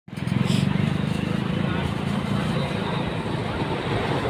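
An engine running steadily at low revs nearby, with a low, even pulsing hum, amid street noise.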